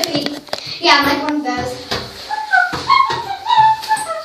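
A child singing or sing-song vocalizing without clear words, with several held notes, over a few knocks from handling the phone.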